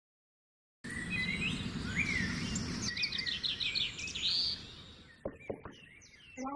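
Birds chirping and trilling over a steady background hiss, starting suddenly about a second in and fading out near the end, followed by a few faint clicks.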